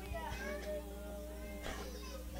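Faint high-pitched voices in the background, several overlapping, over a steady low hum from the sound system.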